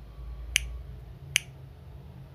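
Two sharp single clicks of a computer mouse, a little under a second apart, over a low steady hum.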